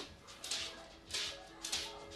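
A few short, soft kisses on a baby's head, about half a second apart, with quiet background music coming in about a second in.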